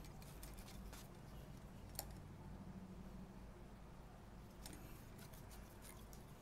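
Near silence: faint low room hum with a few soft ticks and one sharper click about two seconds in, from hands winding sewing thread around the bucktail on a crappie jig held in a vise.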